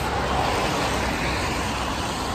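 Steady road traffic noise from cars passing on a rain-wet city road, with tyres hissing on the wet tarmac.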